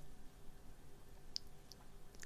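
Faint room tone with two small faint clicks, about a third of a second apart, roughly a second and a half in.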